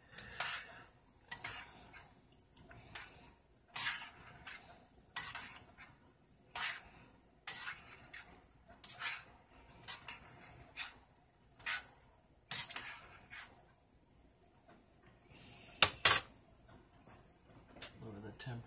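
A metal spoon stirring pasta in a stainless steel saucepan, scraping and knocking against the pot roughly once a second, stirred so the pasta doesn't stick to the pan. Near the end come two sharp metallic clinks, the loudest sounds.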